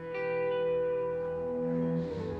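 Background music: slow, held notes that swell in at the start, with a lower note entering near the end.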